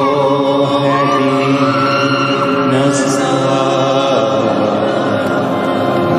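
Music with chant-like singing: voices hold long, steady notes.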